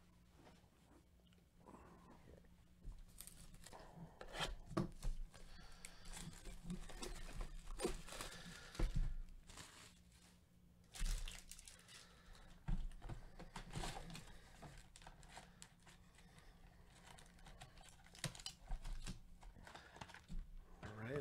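Foil trading-card pack wrappers being torn open and crinkled by hand, in irregular bursts of tearing and rustling.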